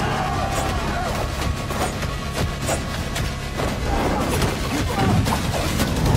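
Dramatic action-trailer music with many short, sharp hits and impacts laid over it, and men shouting near the start.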